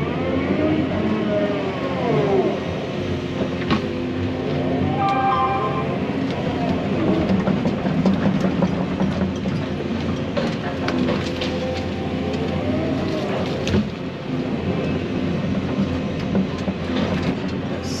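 Tracked excavator's diesel engine and hydraulics running under load, heard from inside the cab, with a whine that rises and falls several times as the operator works the controls. Occasional knocks come from the bucket and thumb handling logs.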